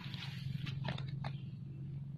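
Short crackling clicks of hands handling a snare cord, three or four of them in the first second and a half, over a faint steady low hum.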